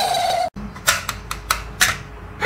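A short held vocal note, then a cut and about five sharp plastic clicks at uneven intervals from a crocodile-dentist toy as its teeth are pressed down one by one.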